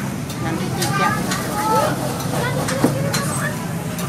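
Indistinct chatter of several people over a steady low background rumble, with one sharp knock about three seconds in.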